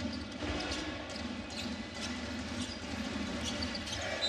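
A basketball being dribbled on the hardwood court over the steady noise of the arena crowd.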